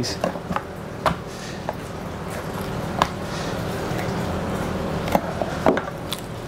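Knife jointing a raw rabbit on a plastic cutting board, separating the legs: a handful of short sharp knocks and clicks from blade and joints over a steady background hum.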